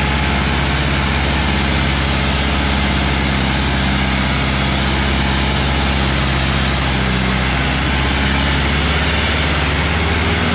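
Powertrac Euro 60 tractor's diesel engine running steadily under heavy load as it drags a disc harrow through loose soil.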